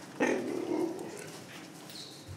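Cheetah cubs feeding on raw meat. One gives a short, rough call about a quarter second in that fades within about a second.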